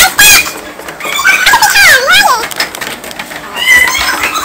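High-pitched playful squeals and cries from young women: a short squeal at the start, one long swooping cry in the middle that dips and rises in pitch, and a brief high squeal near the end.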